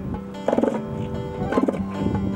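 Bull northern elephant seal giving its pulsed threat call, two bursts about a second apart, over background music.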